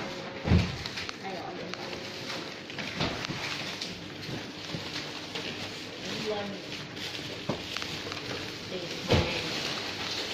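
Faint background talk and room tone, with two short low thumps from the handheld phone being moved, one about half a second in and a louder one near the end.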